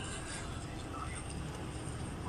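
Street ambience: a steady low rumble, with faint voices in the background.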